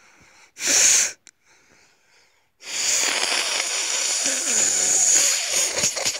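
A person forcing breath out hard: a short loud blast about a second in, then a long, rough, wheezy hiss of breath lasting about three seconds.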